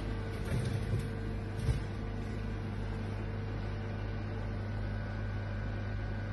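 Steady hum of an infrared slimming capsule running, with a few soft low knocks in the first two seconds.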